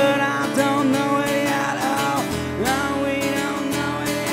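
Live acoustic guitar strummed under a sung melody line.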